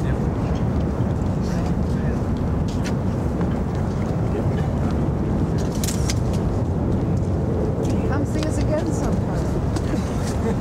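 A steady low rumble with indistinct voices of a group of people and a few faint scattered clicks.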